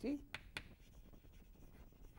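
Chalk on a chalkboard while writing: two sharp taps near the start, then faint scratching and light ticks.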